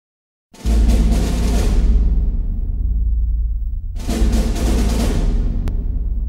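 Opening music sting: two heavy drum hits about three and a half seconds apart, each ringing out at length over a deep low rumble.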